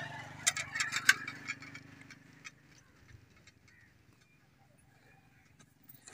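Crackling, rustling footsteps on dry grass and stubble: a burst of sharp clicks for the first two seconds or so that then thins out. Under them a low motorcycle engine hum fades away.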